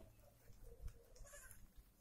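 Near silence with a faint goat bleat around the middle.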